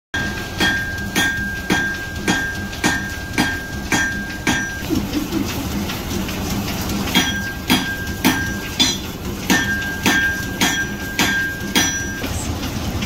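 Hammer blows on an anvil in a steady rhythm, about two a second, each leaving a high ringing note. The hammering stops for about two seconds midway, then starts again.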